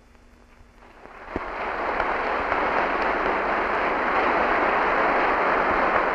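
Audience applauding, swelling in about a second after a brief hush and then holding steady.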